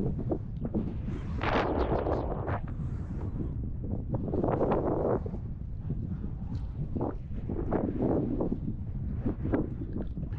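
Strong wind buffeting the microphone: a steady low rumble with louder surges about a second and a half in and again around four to five seconds in.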